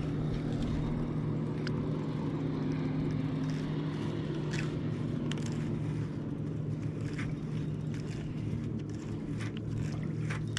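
Bow-mounted electric trolling motor humming steadily, with a few faint sharp ticks over it as a small bass is reeled up beside the boat.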